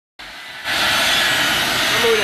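Boeing C-17 Globemaster III's four Pratt & Whitney F117 turbofan engines running as it taxis, a steady high whine and rush that grows louder about half a second in.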